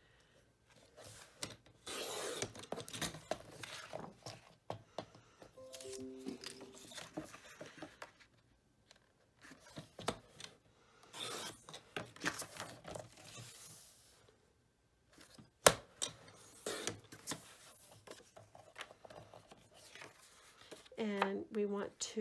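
Fiskars sliding paper trimmer cutting plaid patterned paper: two rasping strokes of the blade carriage, a couple of seconds in and again about halfway. The paper is handled between the strokes, and there is one sharp click later on.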